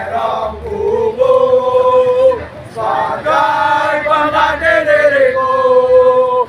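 A group of young men singing together in unison as they march, with two long held notes, the second ending near the end.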